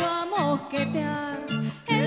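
Live band playing: violin and a woman's singing over guitar and drums, with gliding melodic notes over a steady rhythmic accompaniment.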